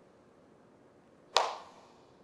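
A single sharp slap of hand striking hand, about one and a half seconds in, with a short room echo fading after it.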